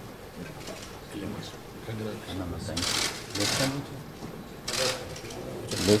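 Indistinct chatter of several people talking in a large hall, with short bursts of hissy, rattling noise over it about halfway through and near the end.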